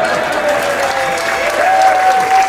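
Audience applauding and cheering, with voices calling out over the clapping and one long held shout near the end.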